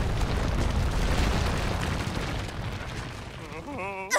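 Cartoon explosion sound effect: a long rumbling blast that slowly fades away.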